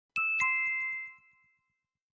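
A two-note chime, a high ding followed a quarter second later by a lower dong, ringing out and fading within about a second.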